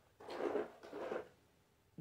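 Two short rustles of wax melt packaging being handled, close together in the first second or so.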